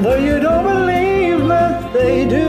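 Singing over a backing track: a held, wordless vocal line that slides up and down in pitch.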